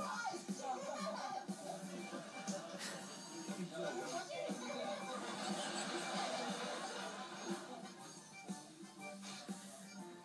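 Television programme audio played through a TV's speaker: background music with voices over it.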